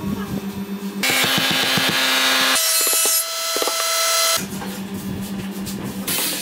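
Wood being sawn and rubbed in a run of short clips. The sound changes abruptly about a second in, again about halfway through and once more near the end, each stretch with rapid, even strokes over a steady tone.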